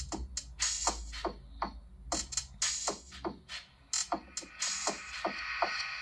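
Electronic dance track with a steady drum-machine beat playing through the Vivo V25 Pro's single mono loudspeaker.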